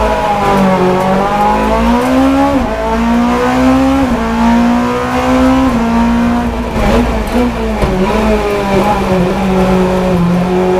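Four-cylinder 20-valve 2.0-litre engine of a VW Golf Mk3 hillclimb race car, heard from inside the cabin, accelerating hard from the start, its note climbing and dropping sharply at quick upshifts about two and a half and six seconds in. In the last few seconds the engine note falls as the car brakes hard.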